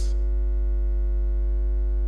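Steady electrical mains hum: a deep drone with a set of fainter steady higher tones above it, unchanging and with nothing else over it.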